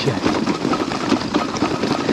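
Loaded titanium gravel bike rolling fast over a rough, rocky trail: steady tyre noise with dense, rapid rattling and clatter from the bike and its luggage.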